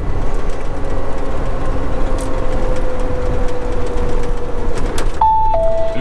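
Steady diesel engine drone and road rumble inside a moving semi-truck's cab, with a faint steady hum. Near the end an electronic two-note chime sounds, a higher note then a lower one.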